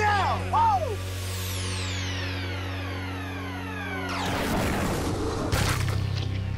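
A sound-effect whistle falling in pitch for about three seconds, as of something dropping from the sky, then a crash as it lands, with a second burst near the end. A low, steady music drone runs underneath.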